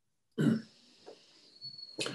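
A man's single short cough, about half a second in, picked up by a video-call headset microphone.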